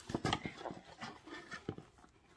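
Light knocks, taps and rustles of a small cardboard skincare box being handled: a quick cluster of strokes at the start, then a few scattered clicks.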